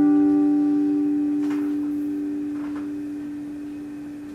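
The final chord of a song on keyboard and acoustic guitar, ringing out and fading away steadily.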